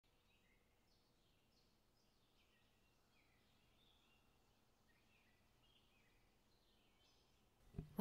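Faint birdsong: scattered short chirps that sweep downward in pitch, over near silence.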